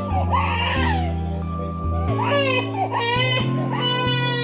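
A baby of about three and a half months crying in several short wails while being bottle-fed, the longest wail near the end, over background music with steady held chords.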